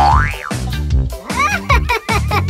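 Upbeat backing music with a steady beat, overlaid with cartoon sound effects: a quick rising whistle at the start, then a few short springy boing tones in the second half.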